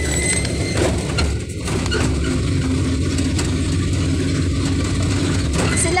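Vehicle engine running steadily with road noise, heard from inside the passenger cab of a moving vehicle: a continuous low hum.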